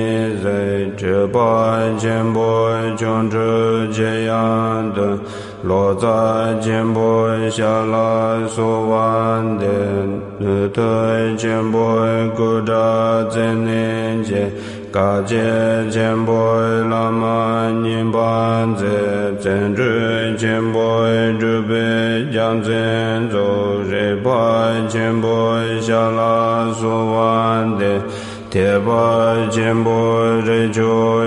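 Tibetan Buddhist mantra chanted in a sustained, pitched voice over a steady low drone. The chanted phrases are broken by short pauses every few seconds.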